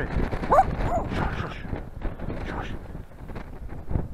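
Wind rushing over the onboard camera microphone of an RC glider skimming low over heather. A short rising cry sounds about half a second in, and a sharp knock comes near the end.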